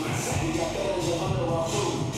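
Background music with steady held notes.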